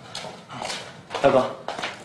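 Footsteps of several men walking across a cell floor, with a short wordless voice sound about a second in.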